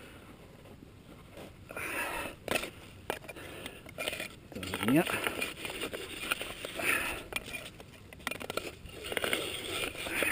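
A climber's hard breathing, with a short rising grunt about five seconds in, and sharp knocks and scrapes of ice-axe picks on rock and snow.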